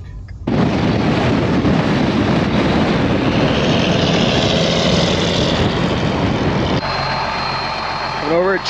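Loud wind rush and road noise on a camera mounted on the hood of a moving pickup, starting suddenly about half a second in and holding steady. Near the end it gives way to a quieter, steady engine hum.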